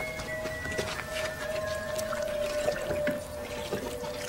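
Water splashing and trickling in a large stone jar, over soft film-score music holding one long steady note.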